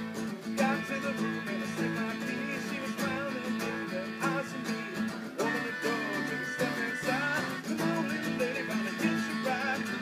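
Acoustic string band playing an instrumental passage: several strummed acoustic guitars, a melodica holding notes, and a guitar played flat on the lap with sliding, wavering notes.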